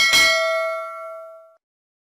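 Subscribe-animation sound effect: a mouse click, then a single bright bell ding from the notification bell. The ding rings out and fades away within about a second and a half.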